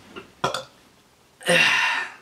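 A man burps once, a short rough burp about a second and a half in, after a couple of faint clicks.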